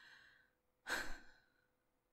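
A woman's breath drawn in, then a sigh out about a second in.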